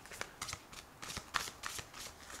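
A thick deck of oracle cards being shuffled by hand: an irregular run of quick, soft card flicks and rustles.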